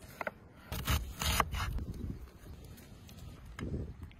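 Kitchen knife slicing through a peeled onion onto a wooden cutting board: two drawn, scraping cuts about a second in.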